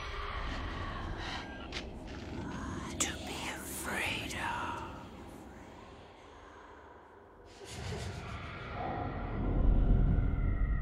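Whispering voices with a sharp click about three seconds in. After a quieter stretch, a low rumble swells and is loudest near the end.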